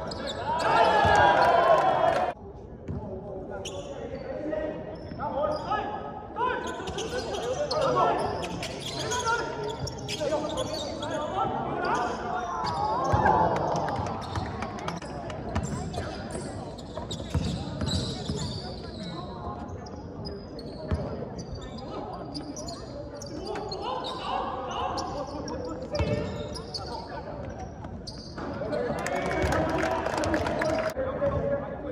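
A basketball bouncing on a hardwood court in a large, echoing gym, mixed with players' and bench voices calling out. The sound is louder for the first two seconds and then cuts off suddenly.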